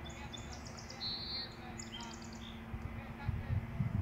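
A songbird chirping outdoors: three or four short, rapid high trills in the first half, over a faint steady hum. A low rumble picks up near the end.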